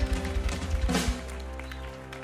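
A live worship band with drums, guitar and singers ends a hymn: a run of drum hits and a crash close the song about a second in, then the final chord rings on, quieter.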